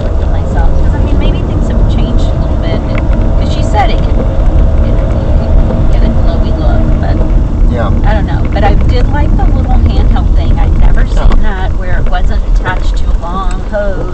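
Low, steady road and engine rumble inside a moving car's cabin. Faint voices talk over it in the second half.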